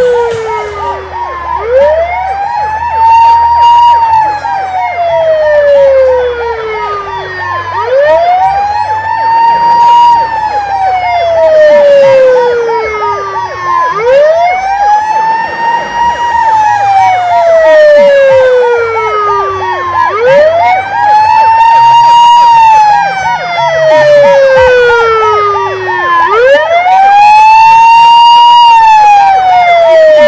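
Ambulance siren wailing: each cycle sweeps up quickly, holds briefly at the top, then falls slowly, about every six seconds. A steady high warbling tone runs underneath.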